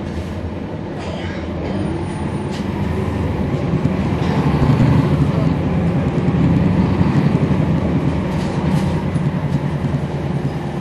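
Cummins ISL9 inline-six diesel engine of a NABI transit bus heard from on board. It runs with a deep rumble that grows louder over the first few seconds as the bus pulls under load, then holds steady.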